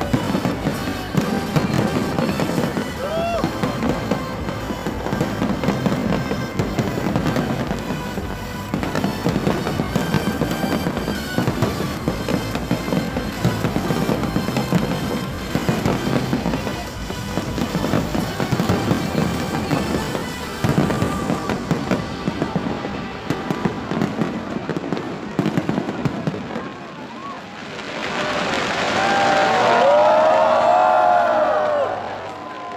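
A large aerial fireworks display bursting and crackling continuously in rapid succession. Near the end a crowd swells into cheering and whoops.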